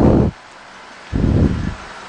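Two short, muffled puffs of noise on a close headset microphone, one at the start and one just past a second in, over a steady background hiss.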